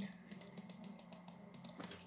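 A quick, irregular run of light clicks at a computer, about a dozen in two seconds, like keys or buttons being pressed while working the game, over a faint steady low hum.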